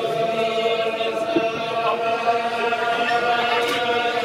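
A crowd of Hasidic men singing a slow niggun together in unison, holding long, drawn-out notes.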